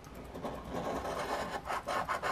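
A coin scraping the latex coating off a scratch-off lottery ticket, a rasping rub that builds into quick back-and-forth strokes near the end.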